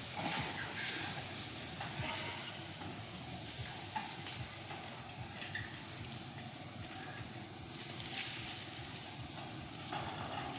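Steady outdoor background hiss with a thin, constant high-pitched tone running through it and a few faint scattered clicks.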